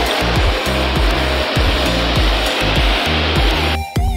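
Rushing river water churning over boulder rapids, a loud steady hiss, over background music with a steady beat. The water cuts off suddenly near the end, leaving only the music.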